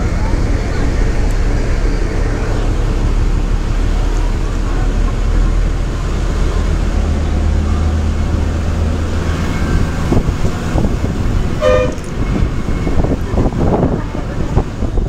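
A bus engine drones steadily as it drives, heard from inside the bus. A short horn toot sounds near the end.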